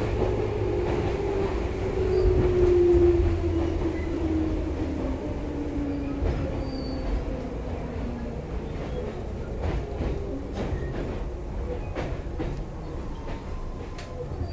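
Inside a Tobu 10030 series field-chopper electric motor car as it slows: the whine of the traction motors and gears falls steadily in pitch over the first several seconds under the low running rumble of the wheels. The level eases down as the train brakes, and a few light clicks follow in the later seconds.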